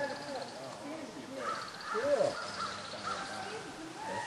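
Birds calling around a bear feeding area, with a quick run of short repeated calls in the second half, over faint background voices.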